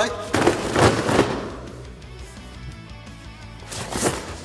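Cardboard boxes crunching and thudding as a person jumps onto them: a cluster of loud, noisy crashes in the first second or so, then quieter rustling, over background music.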